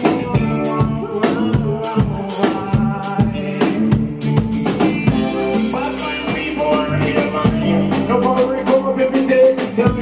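Live band music with a steady beat: drum kit hits and rimshots over sustained keyboard and bass notes.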